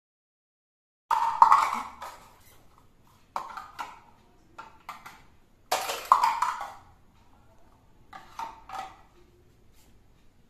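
Hollow plastic stacking cubes knocking together and clattering on a hard floor, in four short bursts of clatter with a brief ring after each.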